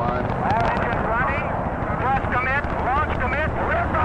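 Saturn I rocket's engines firing at launch: a steady, heavy low rumble, with a voice talking over it.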